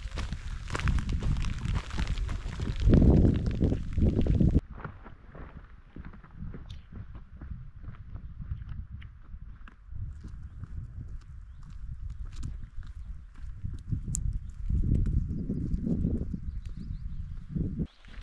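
A hiker's footsteps and trekking-pole tips tapping on a gravel path, a run of short irregular clicks. For the first four or so seconds, and again briefly near the end, low wind rumble on the microphone sits under them.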